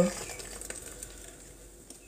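Hot water pouring from a kettle into a hot water bottle, a soft trickle that fades away over about two seconds.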